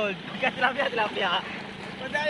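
Mostly speech: men talking, over a steady background hiss of wind and choppy water.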